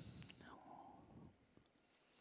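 Near silence: studio room tone in a pause between speech, with a faint, brief breath-like sound about half a second in.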